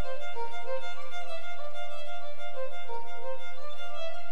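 Music: a fiddle playing a tune, moving through several notes a second.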